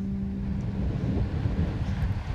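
Strong wind buffeting the camera microphone: a rough, gusting low rumble.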